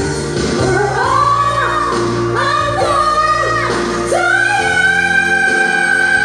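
Live pop singing into microphones with instrumental backing. The voice slides between notes, then holds one long note from about four seconds in.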